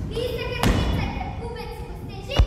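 A single heavy thump of a performer hitting the stage floor about two-thirds of a second in, amid children's voices calling out long, level held notes.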